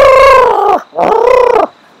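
African elephants trumpeting: two loud calls, each under a second long, with a short break between them.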